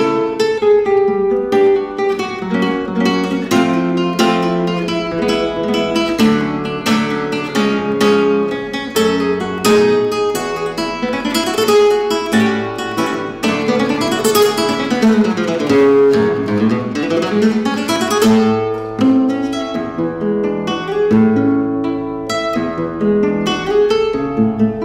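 Solo classical nylon-string guitar played fingerstyle in a flamenco style. Partway through come fast runs up and down the strings and bright strummed chords.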